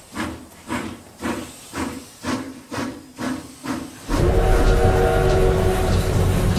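Steam locomotive chuffing about twice a second, then a steam whistle blowing a steady chord of several tones over a low rumble from about four seconds in, suddenly much louder.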